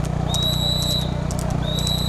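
Steady low rumble of a moving vehicle, with a high-pitched electronic beep repeating about every second and a quarter.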